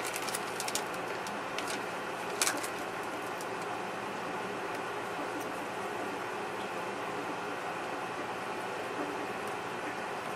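A few light clicks and taps in the first couple of seconds as a small jar of red dye is handled with gloved fingers, over a steady background hum.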